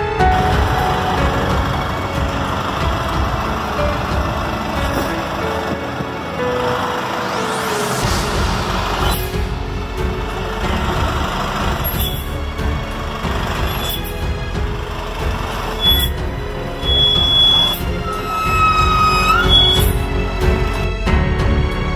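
Background music laid over the diesel engine of a Volkswagen Delivery 9.160 box truck driving off, with a high squeal held and rising near the end.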